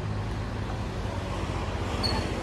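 Diesel engine of a Scania coach idling steadily, a low even hum under street noise.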